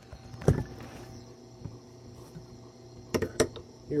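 Tormek T3 water-cooled sharpening machine running, its motor giving a steady low hum. A sharp knock comes about half a second in and two quick knocks follow near the end.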